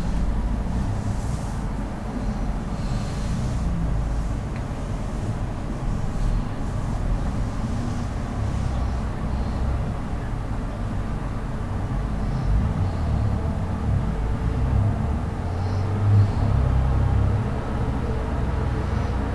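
Low, uneven rumble that swells a few times near the end, with a few faint breaths over it.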